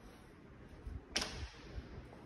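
Interior closet door being shut: one sharp latch click a little past halfway, with a few soft low thumps around it.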